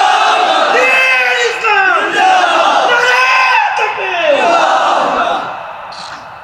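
A man wailing and weeping loudly into a public-address microphone, in about five long drawn-out cries that rise and fall, with a crowd's voices underneath; the wailing dies down near the end.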